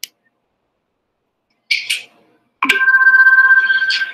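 A single click, a pause, then from about two and a half seconds in a steady ringing tone of two main pitches, like a phone ringtone, held at an even level for about a second and a half until a man's voice takes over.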